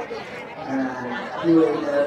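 Speech: a person talking, with crowd chatter in the background.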